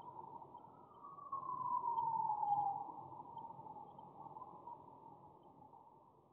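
A distant siren wailing: one long wail that falls in pitch about a second in and is loudest around two seconds, then fades away.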